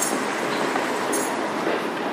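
A steady rushing noise with no clear pitch, fading slowly, with a faint high shimmer about a second in.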